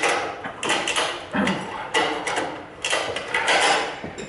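Ratchet strap being cranked in a series of ratcheting strokes, about one every two-thirds of a second, as the strap is tightened to compress a front coil spring.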